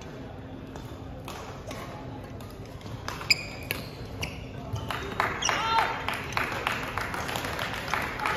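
Badminton rally: several sharp cracks of racket strings hitting the shuttlecock, the loudest about three seconds in, and shoes squeaking on the wooden court floor, busier in the second half.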